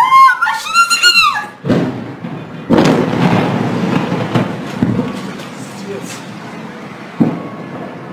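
A person screams in alarm. Then a burning filling station explodes: a thump, then a loud blast about three seconds in that rumbles on and fades over a few seconds, with another sharp bang near the end.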